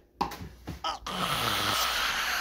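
A person's short voiced sounds, then from about a second in a long, loud breathy exhale close to the microphone, a sigh.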